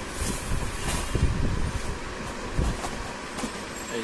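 Cloth and paper rustling as a cotton saree is folded and handled, with a few brief rustles near the start and about a second in, over an uneven low rumble.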